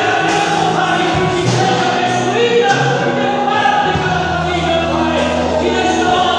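Live gospel worship song: voices singing together into microphones over sustained instrumental accompaniment, amplified through a church sound system.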